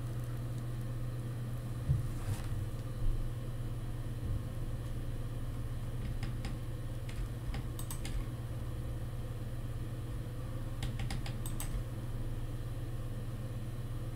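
Steady low hum of room tone with a few faint, scattered clicks from computer use.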